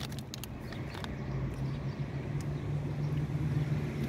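Low, steady motor hum, like a vehicle engine running, growing a little louder through the second half.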